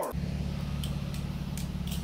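A Mazda Miata's four-cylinder engine running steadily at low revs, with a low, even exhaust note.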